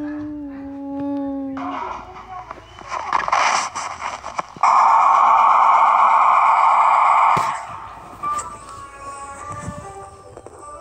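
A person hums a long 'mm' for about two seconds, then the soundtrack of a Sony Bravia TV advert plays back: scattered noise, a loud steady rushing hiss for about three seconds that cuts off sharply, then soft music.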